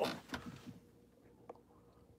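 Camera being handled and repositioned: faint handling noise with a few soft clicks and knocks over quiet room tone.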